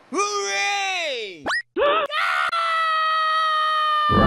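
High-pitched, sped-up cartoon character voice: a falling whine, a quick rising glide about a second and a half in, then a long, steady high scream of fright held to the end.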